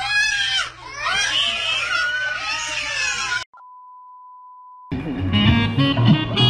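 Many children's voices shrieking and yelling over each other. After about three and a half seconds they cut off into a steady high beep lasting over a second, and guitar music starts near the end.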